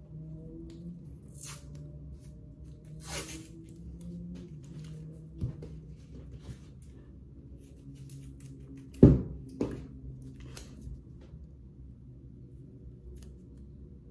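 Black hockey tape peeled off its roll in short rasps, cut with scissors and wrapped around a hickory golf club's grip. Two sharp knocks a little past halfway are the loudest sounds.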